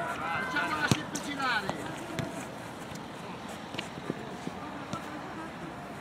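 Footballers shouting on the pitch, short calls of "no, no" in the first two seconds, with one sharp knock about a second in. After that there is only low, steady outdoor background noise.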